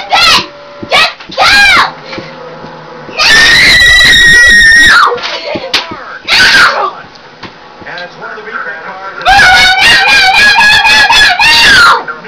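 A girl screaming and shouting in excited cheering. Several short shouts come first, then a long high scream about three seconds in that lasts nearly two seconds. Another long scream runs from about nine seconds to the end.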